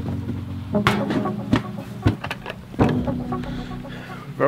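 Background guitar music, with several knocks and clunks about a second apart as a plastic bucket is lifted off a steel drum and handled.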